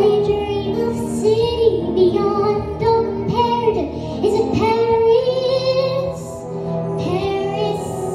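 An 11-year-old girl singing solo into a microphone over instrumental accompaniment.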